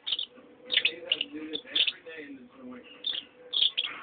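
Parrotlets giving short, sharp chirps in scattered bursts, several a second at times.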